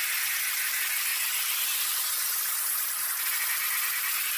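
Steady, harsh high-pitched noise like heavily distorted static, with no clear tone or beat.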